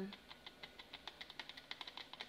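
A quick, irregular run of faint, light clicks and ticks, about ten a second, from hands handling a plastic measuring jug.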